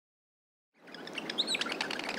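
Birds chirping: a birdsong ambience that fades in from silence about three-quarters of a second in, with many quick high chirps and whistles over a steady background hiss.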